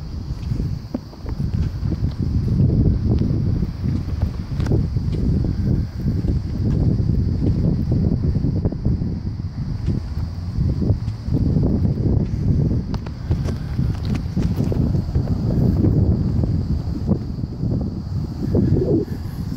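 Wind buffeting the microphone outdoors: a low, gusting rumble that swells and dips.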